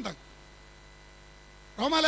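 Steady low electrical mains hum in a brief pause between a man's spoken phrases. His voice trails off just after the start and comes back in near the end.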